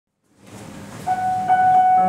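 Digital piano starting the introduction to an opera aria: a high note struck about a second in, struck again half a second later and held.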